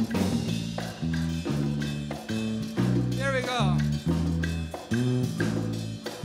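Live Latin jazz band groove: an electric bass plays a repeating line over congas, timbales, claves, quijada and drum kit, with an acoustic guitar strumming along as the newest layer.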